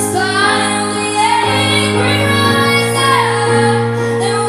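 A young female vocalist singing a slow ballad into a microphone, her melody rising and falling over sustained accompaniment chords that shift about one and a half and three and a half seconds in.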